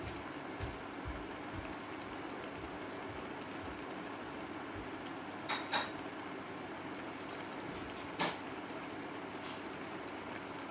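Steady hum and hiss from a pot of stew simmering on an induction hob, with a few faint clicks and two short high chirps about halfway through.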